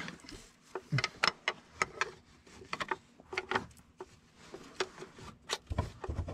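Irregular metal clicks, taps and scrapes of a pry bar and hand tools against an engine block, as a stuck fuel pumping unit on a Paccar MX-13 diesel is pried at.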